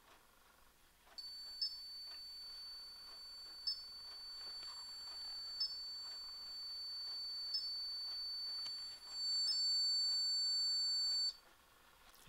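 A paranormal field detector sounding its electronic alarm as it is tripped: a steady high-pitched tone starting about a second in, with a short chirp about every two seconds. It grows louder near the end and cuts off suddenly.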